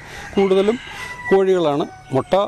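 A rooster crowing, one long thin call of about a second, under a man's voice.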